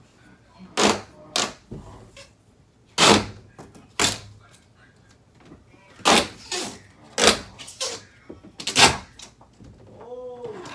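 Adhesive tape being pulled off the roll in short, loud rasps, about eight times, as strips are stretched across window panes.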